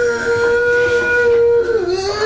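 A man bawling in one long, held, high-pitched wail that wavers and drops in pitch near the end.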